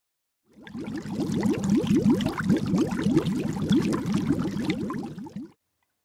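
Rapid bubbling and gurgling of air bubbles in water, a dense stream of quick bubble pops, fading in about half a second in and cutting off shortly before the end.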